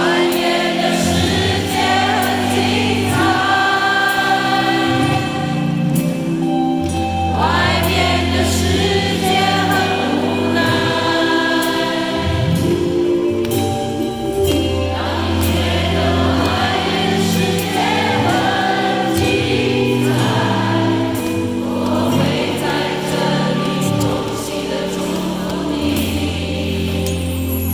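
Live concert music with choir-like vocals holding slow, sustained chords over a bass line that steps to a new note every second or two.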